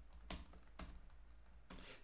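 Faint computer keyboard keystrokes: a few separate, unevenly spaced key presses as numbers are typed at a terminal prompt.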